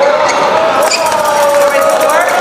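Badminton rally: short, sharp racket hits on the shuttlecock and shoe squeaks on the court floor, over a long, slowly wavering held cheer from the spectators.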